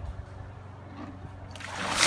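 A bucket of ice water poured over a person: little for the first second and a half as the bucket is lifted, then a rush of pouring, splashing water that sets in and swells near the end.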